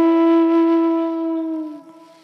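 Music: a flute holds one long steady note that fades away near the end.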